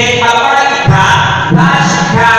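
A voice chanting in long, held notes that break and change pitch every few tenths of a second.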